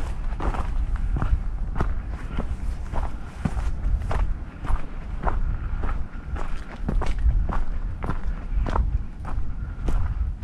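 A hiker's footsteps on a trail at an even walking pace, a little under two steps a second, over a steady low rumble.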